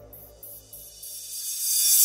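Breakcore track in a breakdown: the beat drops out, leaving a faint low hum and quiet high ticks about three a second. In the second half a noise sweep swells and rises, building toward the drop.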